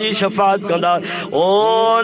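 A man's voice chanting in a melodic recitation style: quick sung phrases, then about a second and a half in the voice glides up into one long held note.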